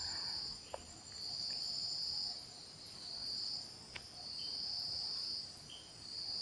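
Insects trilling: a steady high-pitched trill that stops and starts, in stretches of half a second to a second and a half with short gaps between.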